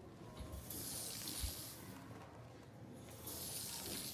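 Stretched metal slinky on a tile floor, its coils giving a hissing metallic shimmer as a compression pulse is sent along it, twice: once about a second in and again near the end. A soft low thud comes between the two.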